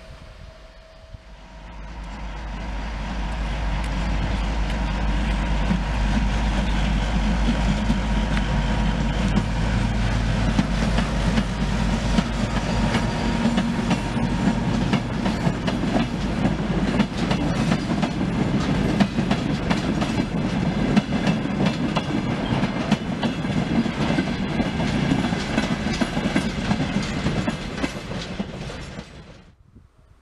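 ST44 (M62-type) diesel locomotive's two-stroke V12 engine running as it shunts a string of hopper wagons past, with the wagon wheels clacking over rail joints. The sound builds up over the first few seconds, holds steady, and cuts off suddenly just before the end.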